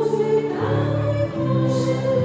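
A woman singing a slow song with long held notes into a microphone, over a steady instrumental accompaniment.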